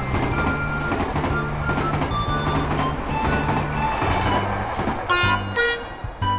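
Bullet-train running noise from a cartoon sound track, mixed with cheerful background music that has a steady beat. The train noise fades out about five seconds in, leaving the music.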